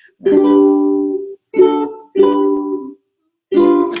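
Ukulele strummed in four separate chords, each starting sharply and ringing out before fading, with a short silence before the fourth.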